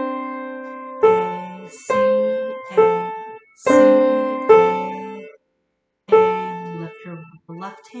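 Upright piano played slowly with both hands: about six notes and two-note chords struck one after another, each left to ring and fade before the next. There is a short pause about two thirds of the way in, then softer notes near the end.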